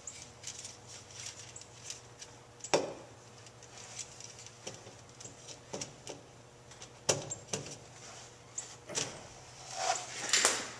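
Hands working a plastic EVAP vent solenoid and its rubber heater hose into place on a truck's frame: a string of light clicks, knocks and rubbing, with the sharpest clicks about three and seven seconds in.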